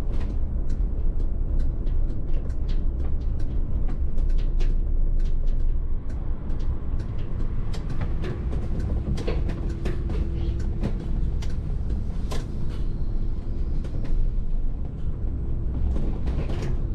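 Cab interior of a VDL city bus on the move: a steady low road and drivetrain rumble with many short clicks and rattles from the cab. A faint steady hum comes in about halfway through.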